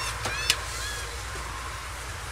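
Steady low rumble of an idling vehicle with street noise, and a single sharp click about half a second in.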